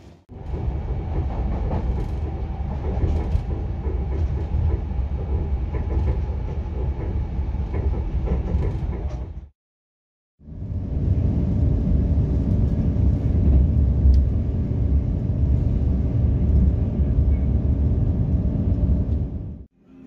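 Train in motion, a steady low rumble of the ride, in two stretches with a sudden cut of about a second near the middle.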